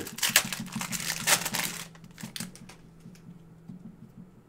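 Foil wrapper of a Panini Prizm trading-card pack being torn open and crinkled for about two seconds. Then come a few light clicks and rustles as the cards are handled, over a faint steady hum.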